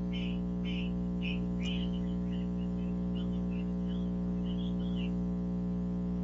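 Steady electrical buzz on a conference-call line, a stack of even overtones, with faint high chirping blips through the first five seconds. It is line noise from a participant's connection, which the hosts still hear as a sound on the call.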